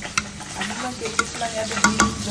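A spoon stirring and scraping inside an aluminium pressure cooker, with a few sharp metal-on-metal clinks and short squeaky scraping tones.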